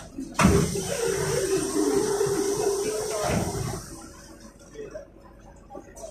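A sudden hiss of released compressed air from the Sinara 6254.00 trolleybus's pneumatic system, starting with a knock about half a second in and lasting about three seconds before cutting off.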